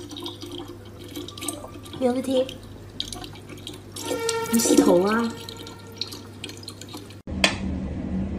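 Water running from a tap into a plastic bottle and over a cat's head, with a person's voice heard twice, the longer time about four seconds in. Near the end, after a sudden cut, a single sharp tick of a mechanical metronome.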